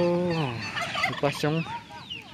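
Domestic fowl calling: a long, held, pitched call that drops away about half a second in, then a few short calls.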